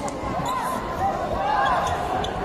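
Indoor basketball game in play: short, repeated squeaks of sneakers on the court and the ball bouncing, over a murmur of crowd voices.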